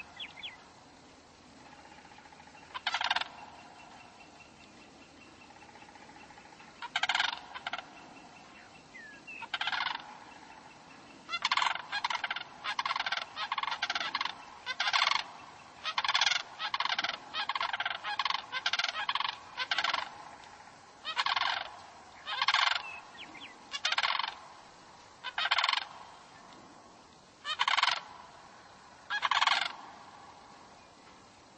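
Repeated short bird calls, about two dozen of them, sparse at first, then coming in a quick run through the middle, then spacing out again.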